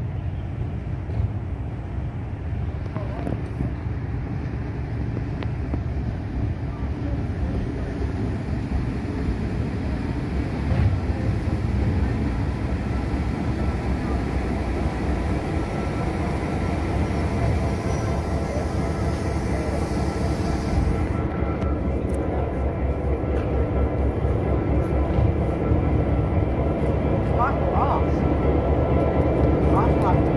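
Heritage diesel-electric locomotive 42101 running as it draws in along the platform: a steady low engine rumble with a humming note that grows louder as it nears. A high hiss cuts off suddenly about two-thirds of the way through, and brief faint squeals come near the end.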